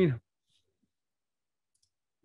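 A man's word trails off, then near silence, with a couple of very faint clicks.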